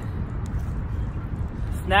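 Steady low rumble of outdoor background noise with no distinct events, and a man's short word near the end.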